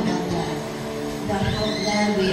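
A live worship band playing softly, with people in the room talking and calling out over the music.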